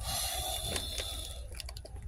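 Rustling and crinkling of packaging with a few light clicks and taps, as hands rummage through a cardboard box.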